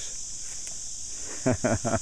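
A steady, high-pitched chorus of insects, with a short burst of voice near the end.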